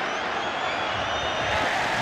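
Stadium crowd of football spectators, a steady din of many voices under the broadcast.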